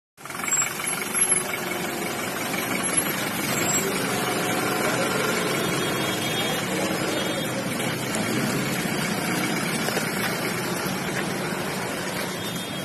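Force Traveller van's engine running steadily close by, with background voices around it.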